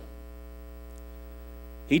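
Steady electrical mains hum, a low buzz with a stack of even overtones. A man's voice starts just before the end.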